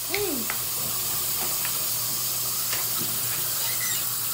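Bathroom sink tap left running: a steady hiss of water, with a few faint clicks over it.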